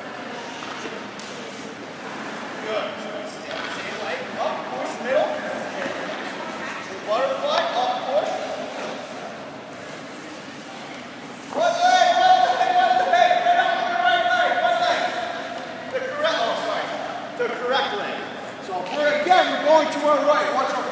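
Indistinct voices echoing in an indoor ice rink, with one long held call a little past halfway.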